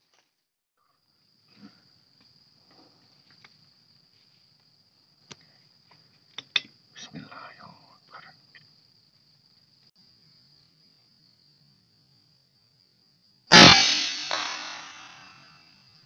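A single loud shot from an air rifle firing a pellet, about three-quarters of the way in, fading away over a couple of seconds. Before it, a steady high insect drone and a few small clicks.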